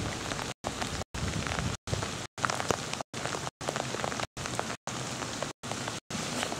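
Rain falling as a steady patter and hiss with scattered small drop clicks. The sound cuts out completely for an instant roughly every half second.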